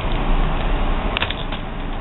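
Steady background hiss, with a brief cluster of light clicks a little over a second in.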